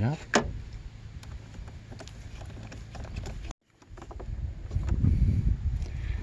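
Faint, scattered clicks and small scrapes from tightening the clamp on the air-intake hose. Midway there is a sudden cut, after which a low rumble on the microphone takes over.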